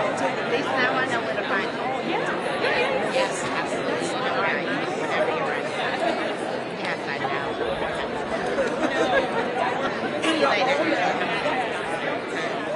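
Crowd chatter: many people talking at once in overlapping conversations, a steady murmur of voices with no single speaker standing out.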